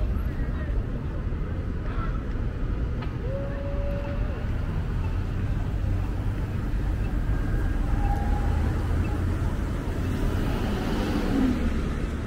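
City street traffic at an intersection: a steady low rumble of cars passing and idling, with faint voices of passers-by mixed in.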